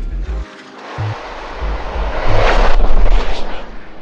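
Logo-animation sound effect: a whoosh that swells to its loudest about three seconds in and then fades, over a low rumble with a couple of deep hits.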